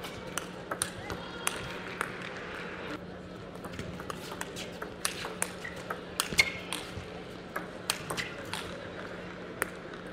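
Table tennis ball clicking off the bats and the table during rallies: sharp ticks at irregular spacing, the loudest about six and a half seconds in. Background voices murmur in the hall, over a steady low hum.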